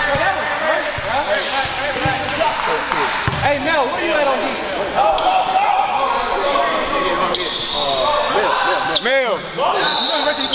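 A basketball being dribbled on a hardwood gym floor while sneakers squeak over and over, with one loud squeak about nine seconds in. Voices carry in the echoing hall.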